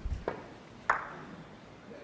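Snooker balls clicking: a light tap of the cue tip on the cue ball, then a sharper, louder click about a second in as the cue ball strikes a red.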